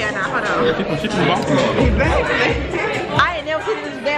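Several people chatting over one another, with background music playing.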